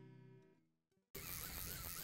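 Background acoustic guitar music dying away on its last held notes, then a moment of dead silence, then a steady hiss of outdoor wind and water noise cutting in abruptly just past the middle.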